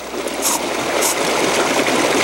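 Shimazaki Dry Shake aerosol can spraying a steady hiss of powder floatant onto a waterlogged dry fly to dry it and make it float again; the hiss starts a moment in.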